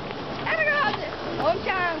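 A young child's voice: two short, high-pitched, wavering calls, the second about a second after the first.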